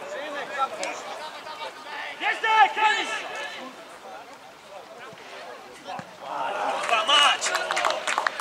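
Men's shouts and calls across a football pitch during live play, one burst about two seconds in and another near the end, over open-air ground noise.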